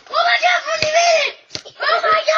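A young child yelling in a high, drawn-out voice with no clear words, broken by two sharp knocks, one near the middle and one about three quarters in.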